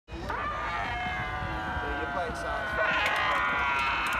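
Several people yelling and hollering in long, drawn-out shouts that overlap one another, over a low wind rumble on the microphone.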